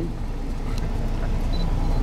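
Sightseeing bus moving through city traffic, heard from inside: a steady low engine and road rumble, growing slightly louder.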